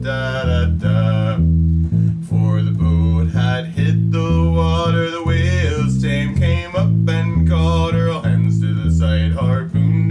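Electric bass guitar, plucked with the fingers, playing a steady line of single notes in A minor, about two notes a second. A man's voice sings the melody over it.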